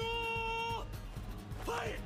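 Anime soundtrack: a character's voice draws out one long, steady high note for most of the first second, over background music, with a little more speech near the end.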